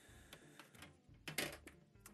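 Faint clicks and light knocks of small black plastic hose fittings and a plastic tap being handled. A brief louder breathy hiss comes about a second and a half in.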